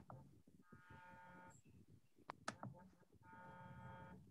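Near silence: faint room tone with a faint electronic tone sounding twice, each about a second long, and a soft click at the start.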